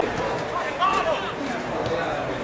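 A few men's voices of sideline spectators talking and calling out over outdoor background noise, one voice clearest about a second in.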